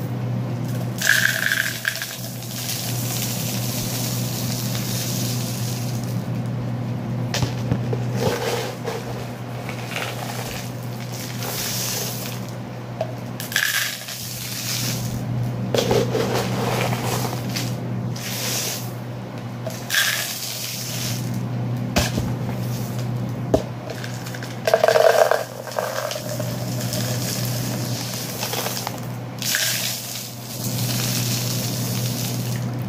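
Dry beans and rice pouring from one plastic cup into another, a rushing rattle in repeated pours broken by short pauses, with a few sharp clicks of grains or cups.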